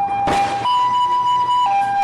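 Two-tone emergency-vehicle siren switching between a lower and a higher note about once a second, with a short burst of noise just after the start.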